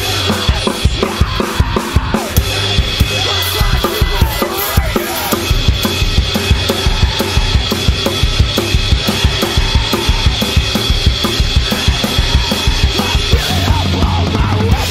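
Acoustic drum kit played hard in fast, steady time: bass drum and snare strikes under crashing Meinl Byzance cymbals. Underneath is the song's backing track, its original drums removed.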